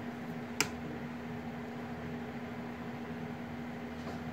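Steady background hum with one low steady tone running through it, and a single short click about half a second in.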